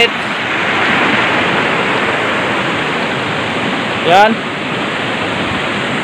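Stream water rushing over a small rocky cascade, a loud steady rush of white water.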